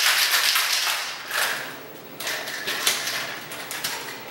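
Ice rattling and clacking hard inside a Boston shaker (metal tin capped with a mixing glass) shaken vigorously, in three spells with short pauses between them, the first the longest.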